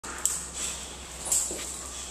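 Dog moving about on a hard floor, two sharp clicks about a second apart, with a faint whimper.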